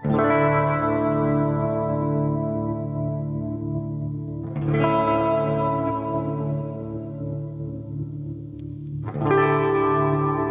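Electric guitar chords played through a BOSS SL-2 Slicer pedal, which chops each ringing chord into a rhythmic, pulsing pattern. New chords are struck at the start, about four and a half seconds in, and about nine seconds in.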